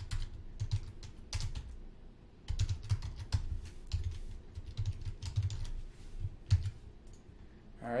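Computer keyboard being typed on: irregular runs of keystroke clicks, with a short pause about two seconds in.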